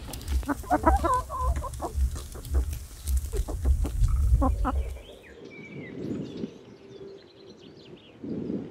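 Domestic hens clucking as they forage, a string of short clucks over a low rumble for about the first five seconds. After that it turns quieter, with faint high chirps.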